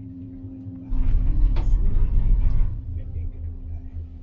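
Cable car cabin running past a support tower: a loud low rumble starting about a second in and lasting nearly two seconds, with a single clunk in the middle, over a steady hum.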